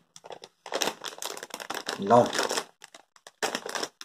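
Plastic bag of Tyrkisk Peber Soft & Salty sweets crinkling as it is handled, in two spells with a short pause near the end.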